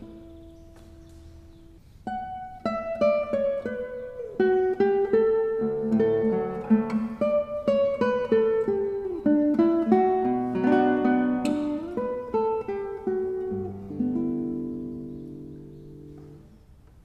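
Nylon-string classical guitar played solo: after a faint held note, a flowing melodic passage of single plucked notes starts about two seconds in and ends on a chord left to ring and fade.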